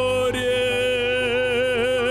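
Song with a male singer holding one long sung note, with a wavering vibrato in its second half, over steady backing music.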